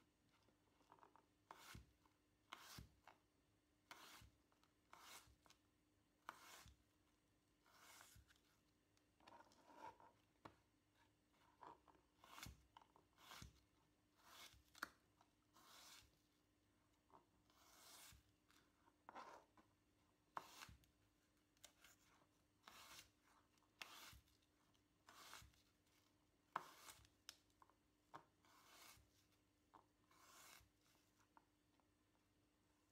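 Faint knife cutting apple into pieces on a plastic chopping board: short crisp cuts through the fruit and taps of the blade on the board, about one every second.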